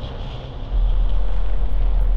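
A deep, low drone that suddenly jumps much louder about two-thirds of a second in and then holds steady.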